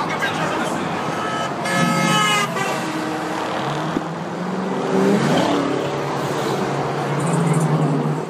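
A car horn sounds once, about two seconds in, for under a second. It is heard over steady outdoor noise of a crowd and vehicles.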